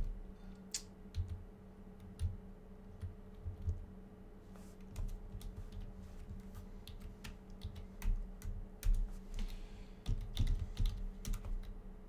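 Typing on a computer keyboard: scattered key presses, with a quicker run of keystrokes near the end. A faint steady hum sits underneath.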